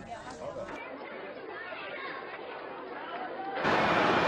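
Faint background murmur of crowd chatter, many voices blended together. Shortly before the end a louder, steady hiss comes in.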